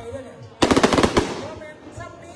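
A rapid crackle of sharp reports, about half a second long, from a giant bang fai (Isan bamboo-style black-powder rocket) that has burst in the air instead of flying. A loudspeaker announcer's voice runs faintly underneath.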